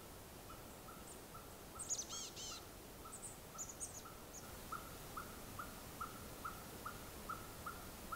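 Faint birdsong in a conifer forest: one bird repeats a short, even-pitched note two to three times a second, and another gives a quick burst of high chirps about two seconds in, with a few more high chirps shortly after.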